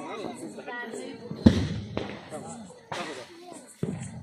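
Four sharp firecracker bangs amid children's voices. The first, about a second and a half in, is the loudest and has a short low rumble after it. The other three are quicker and weaker, spread over the next two seconds.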